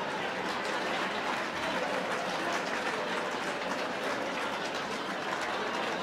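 Audience applauding, a steady dense clapping that swells up just before and holds at an even level.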